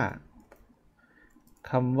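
A few faint clicks from computer keyboard keys during a short pause in speech.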